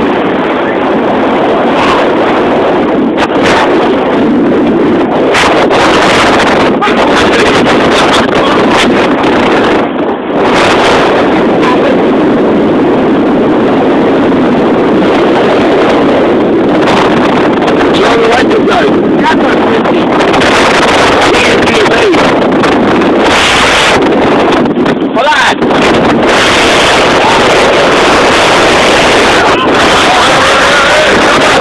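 Loud, steady wind rushing over a phone's microphone held on the hood of a moving car, with brief dips around ten seconds in and again near the end.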